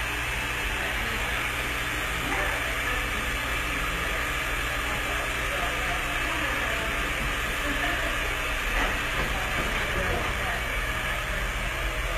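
Steady rushing background noise of a hair salon, with faint distant voices.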